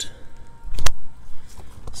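A single dull thump with a sharp click, a little under a second in, over faint background noise.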